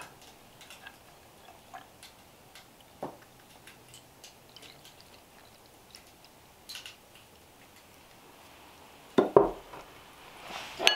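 Milk poured from a ceramic pitcher into an earthenware pot, a faint liquid pour with scattered small clicks. Near the end come a few louder knocks, the loudest sounds here, as the pitcher is set back down on the wooden table.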